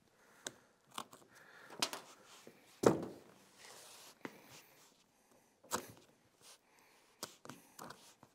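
A thin plywood panel and carpet being handled and set in place by hand: a series of irregular knocks and scuffs, the loudest about three seconds in.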